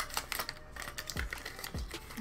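Small plastic clicks and taps from a brush-cleanser bottle being handled, a quick irregular run of them, with two soft low thumps about a second in and near the end.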